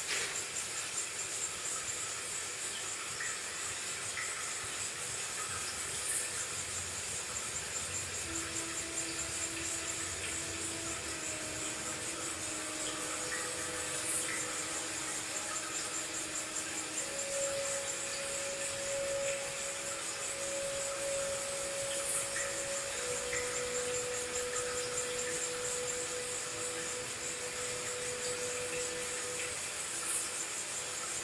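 Slow ambient music: sustained notes that change pitch every few seconds, over a steady high hiss, with a faint tick about every eight seconds.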